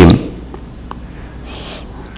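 A man's amplified voice trails off at the start, then a short pause in the speech with faint room tone, a small click about a second in, and a brief soft breath-like hiss near the end.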